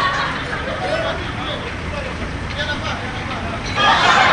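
Men's voices talking on a street, over the steady low rumble of traffic.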